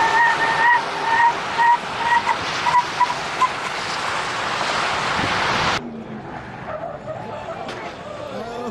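Pickup truck towing a flatbed trailer braking hard on pavement: a steady squeal from the braking wheels over tyre and wind noise breaks into short chirps about two to three and a half seconds in as the rig comes to a stop. Just before six seconds the sound cuts off abruptly to a quieter background with faint voices.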